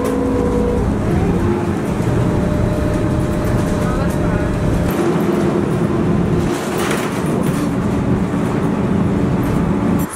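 Cabin noise inside a moving bus: steady engine and road rumble with a droning whine that changes pitch about a second in and again around halfway through.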